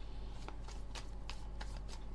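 A deck of cards being shuffled by hand: an irregular patter of soft card clicks, several a second, over a steady low hum.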